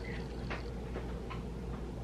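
A few faint, irregular ticks and light crinkles from a hand handling a crumpled paper tissue, over a low steady room hum.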